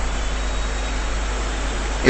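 Steady, even hiss with a constant low hum beneath it: the background noise of a lecture recording.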